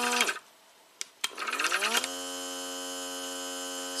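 Small electric air pump of an Autoline Pro Ventus portable smoke machine humming, then cutting off. About a second later there are two quick button clicks, and the pump starts again, its whine rising in pitch for under a second before settling into a steady hum.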